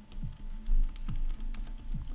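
Computer keyboard typing, scattered key clicks, over quiet background music.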